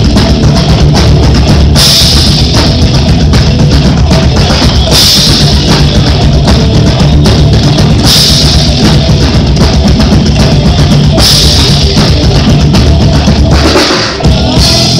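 Live rock band playing an instrumental passage without vocals: electric guitar, bass guitar and drum kit with a driving bass drum, loud and dense throughout, with a crash of cymbals about every three seconds.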